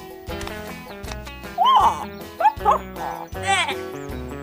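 Cartoon background music with steady notes and a bass line. Over it come wordless, gliding animal-like calls from the animated characters, in three short bursts in the second half.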